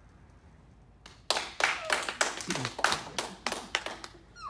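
Hands clapping, a quick uneven run of claps starting about a second in, with a little laughter mixed in near the middle.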